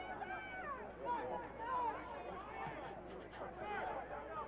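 Faint, distant voices of players and spectators at an outdoor soccer field: scattered shouts and chatter over a low background murmur.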